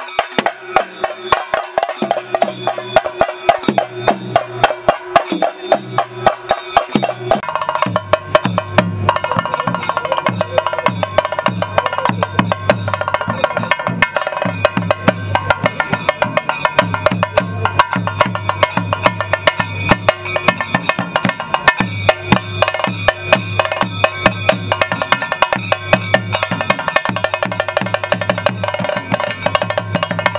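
Chenda drums beaten in rapid, even strokes, with a deeper drum part joining about seven and a half seconds in and steady ringing tones held over the beat.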